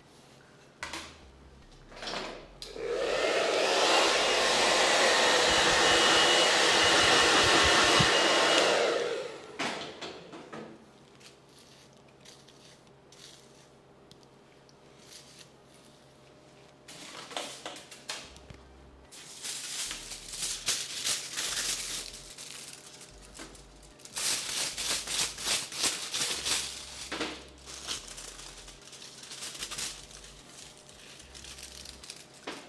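A hair dryer runs steadily for about six seconds, starting a few seconds in and then cutting off. Later, aluminium highlighting foil crinkles and rustles in short bursts as foils are handled and folded over hair sections.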